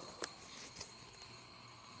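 Faint handling noise from a phone camera being picked up and turned by hand, with one short click just after the start.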